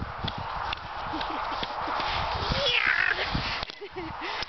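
Cross-country skis swishing and crunching over crusted snow, with the repeated knock and crunch of kick strides and pole plants, under a steady hiss.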